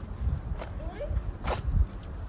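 Footsteps on pavement, a couple of steps about a second apart, over a low rumble, with a brief voice-like sound between them.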